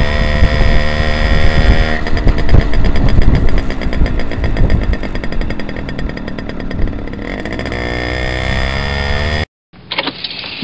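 Simson moped's single-cylinder two-stroke engine running under way, with a fast, even firing rhythm from about two seconds in and a rise in revs near the end. The sound cuts off abruptly shortly before the end.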